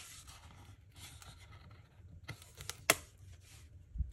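Stiff cardboard calendar folder being handled and unfolded: faint rustling and scraping of card, with a sharp tap at the start and two light taps near three seconds in.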